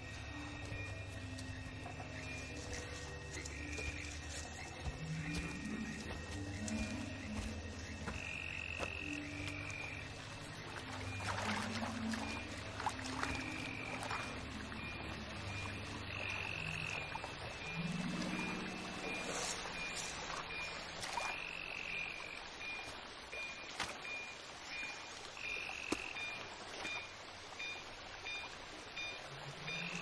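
Film soundtrack of a tense jungle stalk: a low, slow-moving musical score under jungle ambience, with a high chirping call repeating in short pulses. Occasional short clicks sound throughout.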